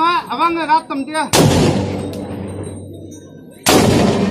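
A voice calls out in loud, rising-and-falling cries, then a gunshot cracks about a second in and rings on for about two seconds; a second shot goes off near the end.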